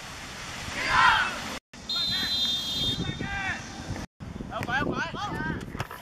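Young boys' voices shouting on a football pitch, with a loud group shout about a second in and scattered calls later. A short, steady, high whistle blast sounds around two seconds in.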